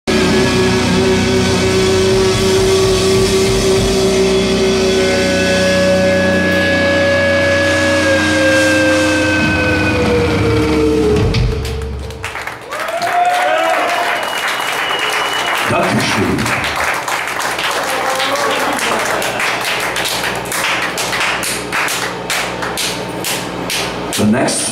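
Amplified electric guitars holding a final chord that rings out with feedback, the tones sliding down in pitch before breaking off about halfway through. The crowd then cheers and applauds.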